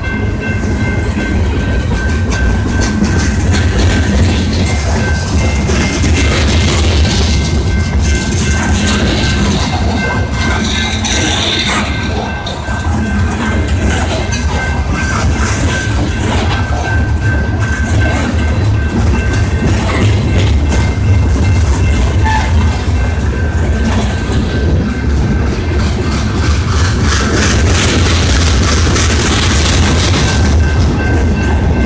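Freight train cars rolling past close by: a loud, steady rumble of steel wheels on the rails, with continuous clicking and rattling from the passing cars.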